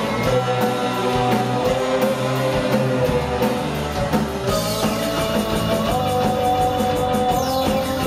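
Gothic rock band playing live: electric guitar, bass, keyboard and drum kit, with long held notes over a regular drum beat.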